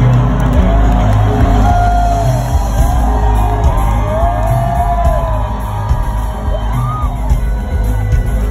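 Live rock band playing loudly through a stadium PA, heard from inside the crowd, with heavy bass and drums and gliding melodic lines above.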